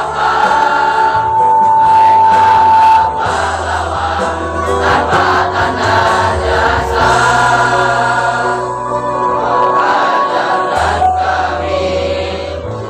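Choir of young students, boys and girls together, singing a slow song with long held notes.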